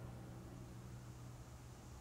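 Quiet room tone: a steady low hum under a faint even hiss, with no distinct events.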